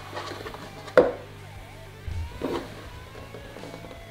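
Background music, with a sharp knock about a second in and softer taps and rustles of a clear plastic RC body shell being handled and turned.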